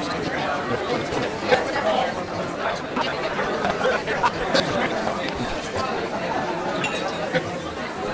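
Steady background chatter of diners' voices in a busy restaurant, with a few short clicks in among it.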